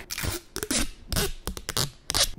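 Protective plastic film being peeled off a small gadget right at the microphone: a run of crackles and rips with short pauses in between.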